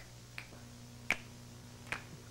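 Four finger snaps, unevenly spaced, the third the loudest, over a faint steady low hum.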